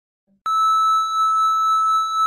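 Colour-bar test tone: a single steady high-pitched beep, starting about half a second in.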